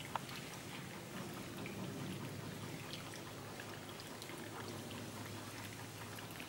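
Steady background hiss with scattered faint clicks and ticks, and no clear single source.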